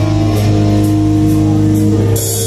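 Live rock band playing through amplifiers: electric guitars and bass guitar hold one sustained chord, with drums keeping time underneath.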